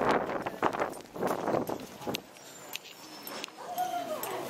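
Footsteps walking on wet pavement, a scuffing step about every half second for the first two seconds, then quieter with a few light clicks.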